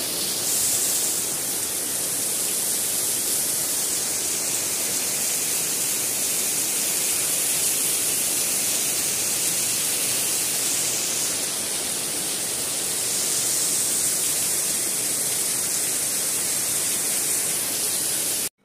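Heavy rain pouring steadily onto dense garden foliage, a loud, even hiss.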